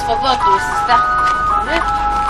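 Background music of long held electronic keyboard notes, with a few brief voice sounds.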